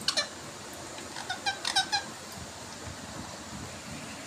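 Indian ringneck parrot giving a quick run of about five short, high squeaks between one and two seconds in, with a brief one at the very start.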